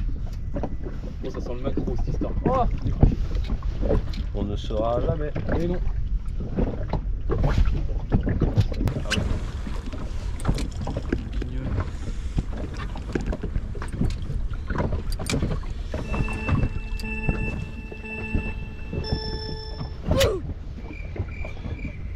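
Wind on the microphone and water against the hull of an inflatable boat at sea, a steady low rumble, with a few brief voices early on. About sixteen seconds in, a chord of steady tones sounds for about four seconds.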